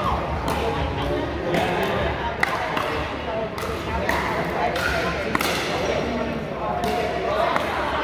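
Pickleball paddles hitting a hard plastic ball during a rally, a series of sharp pops about a second apart, echoing in a large gym over background chatter.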